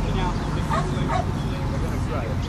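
A dog giving several short whines and yips, over a steady low rumble.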